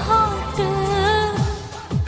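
Indian film song: a singer holds a long, slightly wavering note over a steady low drone, and near the end deep drum hits with a falling pitch come in.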